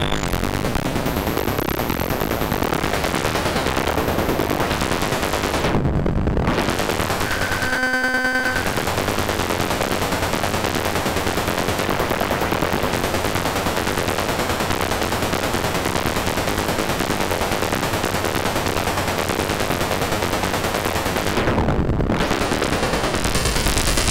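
kNoB Technology SGR1806-20 Eurorack percussion-synth module processing a signal through its spread effect, giving a loud, dense, gritty noise texture that shifts as its knobs are turned. The noise thins out briefly about six seconds in, a short buzzy pitched tone sounds around eight seconds, and it dips again near the end.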